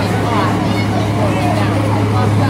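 A vehicle engine idling with a steady low hum, under people's chatter.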